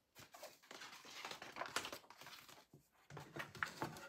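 Faint rustling and soft paper clicks of a picture book's page being turned by hand and pressed open.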